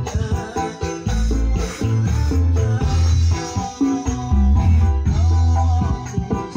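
Recorded music played loud through a small home-built sound system (mixer, amplifier and black speaker cabinets), during a sound check. The low end is heavy, with long bass notes coming back about once a second.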